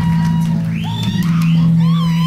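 Live rock band playing, electric guitars over a steadily held low note, with high notes sliding up and down above it.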